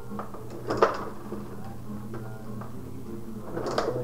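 Clicks and clacks of a tabletop rod-hockey game in play: the rods working the players and the puck striking sticks and boards, with a sharp knock about a second in and another near the end.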